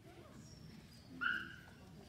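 A dog gives one short, high yelp about a second in.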